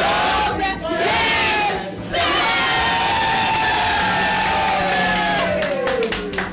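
A group of people singing a birthday song together in unison, ending on one long held note that slowly falls. Clapping starts near the end.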